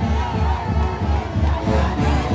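Andean festival music for the Santiago dance, a steady low drum beat with pitched melody over it, mixed with a crowd of dancers shouting and whooping.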